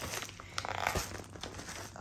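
Shipping packaging being handled: faint crinkling and rustling, with a few light clicks about half a second to a second in.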